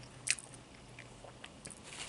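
Close-miked mouth chewing a toasted grilled cheese sandwich: wet mouth clicks and small crunches, one sharp click about a quarter second in louder than the rest, then a few softer ones.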